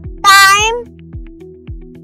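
A single loud cat meow, about half a second long, over background music with a steady beat of about two kicks a second.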